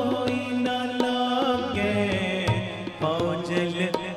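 Live Sikh shabad kirtan music: sustained harmonium-style chords with tabla strokes keeping the rhythm.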